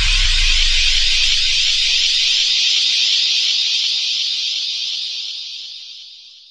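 Ending of an electronic music track: a steady hiss-like noise wash over a low bass rumble. The bass dies away in the first few seconds and the hiss fades out near the end.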